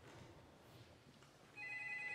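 A telephone ringing with a steady, high two-tone ring. It starts about three-quarters of the way in, after a near-quiet pause between rings. This is the third round of ringing.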